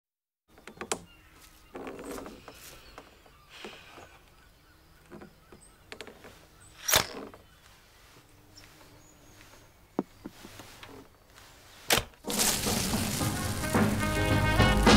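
Scattered knocks and clatter of hand tools against wooden deck boards and a toolbox being rummaged through, with a sharp knock about halfway and another near the end. Music comes in just after the second knock.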